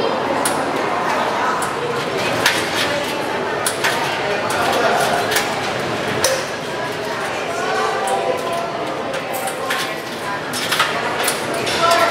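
Overlapping chatter of adults and small children talking in a large echoing hall, with scattered light clicks and knocks.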